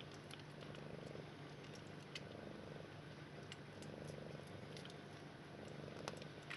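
Soft, steady cat purring from a Sphynx mother and her two-week-old nursing kittens, swelling and easing with each breath, with faint scattered clicks of the kittens suckling.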